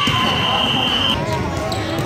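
Children's basketball game in a gym: kids' voices, balls bouncing and shoe squeaks on the hardwood, with a long steady high tone that cuts off about a second in.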